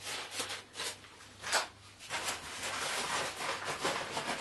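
Rustling of a Mountain Laurel Designs Exodus backpack's fabric and small packed items as they are pushed into its top lid pocket: several short rustles, then a longer continuous rustle in the second half.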